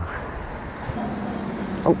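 City street traffic at a junction: a motor vehicle's steady low hum comes in about a second in, over a general wash of street noise.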